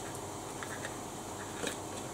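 Steady noise of an electric pedestal fan, with a few faint clicks of a small plastic spray pump and bottle being handled as the pump is fitted.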